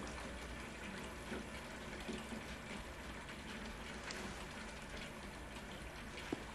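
Quiet background of a film soundtrack: a steady hiss over a low hum, with a few faint soft clicks.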